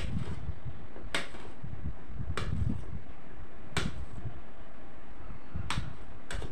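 Knife cutting through blocks of soap base on a steel plate. Each stroke ends in a sharp click of the blade on the metal, five times, a second or more apart.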